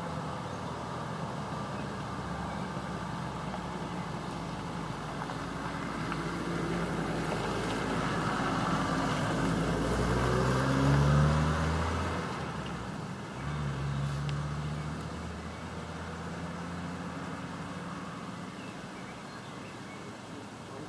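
Motor vehicles passing out of sight: an engine grows louder to a peak about eleven seconds in and fades away, followed by a shorter second pass about fourteen seconds in, over a steady low engine hum.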